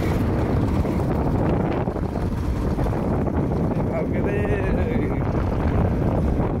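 Wind buffeting the microphone over the steady running of a motorbike riding along a rough road. A faint wavering pitched sound comes in about four seconds in.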